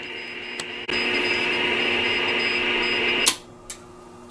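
Shortwave receiver hiss and band static from a vintage National NC-173 tube receiver. It jumps up suddenly about a second in and cuts off sharply near the end, with a faint high tone keying on and off underneath.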